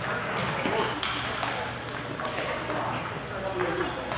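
Celluloid-type table tennis balls clicking irregularly off tables and paddles, a few sharp pings every second, over the chatter of a large hall with many tables in play.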